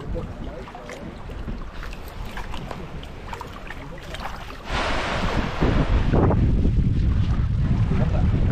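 Shallow sea water sloshing and splashing around a person wading. About halfway through, louder wind buffeting the microphone comes in together with the wash of small waves.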